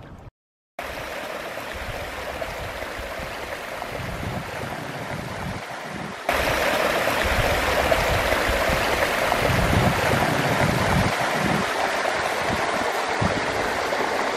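Water spilling over a small concrete weir and running over the rocks below, a steady rush. It gets louder about six seconds in and holds there.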